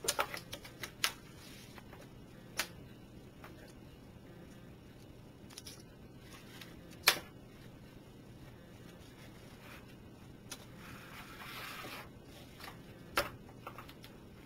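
Canvas straps being pulled through metal cam buckles and cinched tight around a wooden lattice plant press. Scattered clicks and knocks of buckle and wood come quickly in the first second and singly after that, the loudest about seven seconds in, with a brief rasp of strap sliding through a buckle about eleven seconds in.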